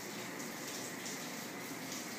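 Steady low background hiss of room tone, with no distinct knocks or calls.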